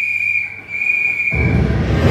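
A shrill, steady whistle tone held in two long blasts with a brief dip between them, fading as a loud, deep rumble sets in about two-thirds of the way through.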